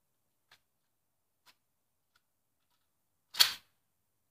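A single loud, sharp crack about three and a half seconds in, dying away within a third of a second, preceded by two faint ticks.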